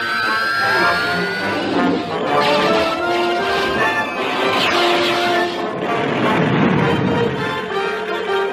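Cartoon action score with sustained notes, overlaid with sound effects of the flying vehicles: a rising whine as they lift off, then several whooshing swells.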